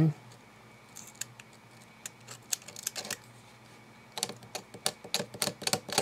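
Paper being picked at with a craft knife and peeled up from a glued page: small irregular clicks and crackles, sparse at first and thicker in the last two seconds.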